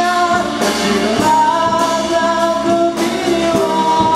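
A band performing a Japanese pop-rock song: sung lead vocal with long held notes over guitar and a drum kit keeping a steady beat.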